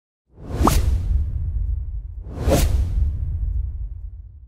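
Two whoosh sound effects about two seconds apart, over a deep low rumble, making up an animated logo intro.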